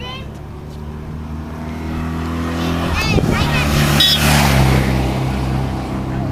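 A motor vehicle's engine approaching and passing, growing louder to a peak about four seconds in, its pitch dropping as it goes by. Short shouts from onlookers sound near the middle.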